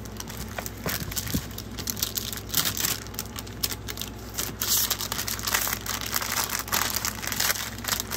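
Clear plastic kit packaging and paper crinkling and rustling as scrapbooking kits are handled, with irregular small clicks and crackles.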